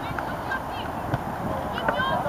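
Short shouts and calls of players across a football pitch during open play, with a single knock about a second in.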